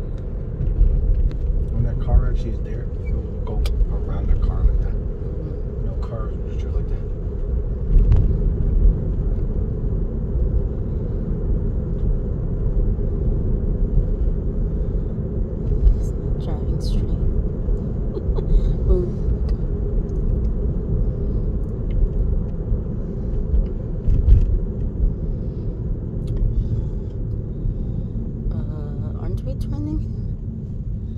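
Steady low road and tyre rumble inside a moving Tesla's cabin, with a few faint knocks.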